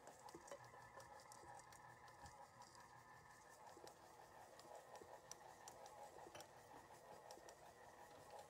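Near silence: a KitchenAid stand mixer faintly running, a steady thin hum with scattered light ticks as its beater turns a crumbly oat mixture.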